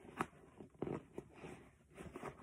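Faint handling noise of hands rummaging through items in a fabric backpack pouch: soft rustling with a few small clicks, the sharpest one just after the start.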